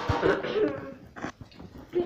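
A child coughing, with short vocal sounds just before it and handling noise from the phone being moved about.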